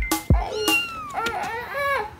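A cat meowing, two drawn-out meows with pitch that rises and falls, over background music.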